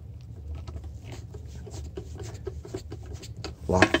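Faint scraping and small scattered ticks of a nut driver turning the quarter-inch lock-down nuts on a sheet-metal cover, loosening them, over a low steady hum.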